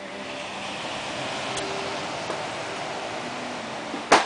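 Steady rushing outdoor noise of distant ocean surf and wind, heard from an open sea-facing balcony.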